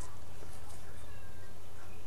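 A cat meowing faintly, a short falling call about halfway through, over a steady low hum.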